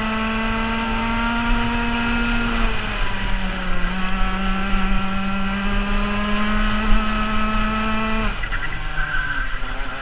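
Rotax FR125 Max single-cylinder two-stroke kart engine, heard from the kart itself, running at high revs with a brief dip about three seconds in. Near the end the revs fall sharply as the driver lifts off for a corner, then begin to climb again.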